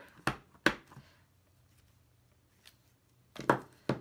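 A clear acrylic stamp block knocking on the tabletop as a photopolymer stamp is pressed onto an envelope and lifted. Two sharp knocks come within the first second, then it is quiet for about two seconds, and two more knocks come near the end.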